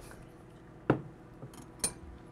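Two sharp taps of a spoon against a blender jar while ingredients are scraped in, about a second apart, the first louder.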